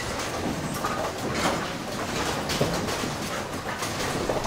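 Ten-pin bowling alley machine room, with the pinsetters of several lanes running: a steady mechanical din broken by clanks and knocks, a few of them a second or so apart.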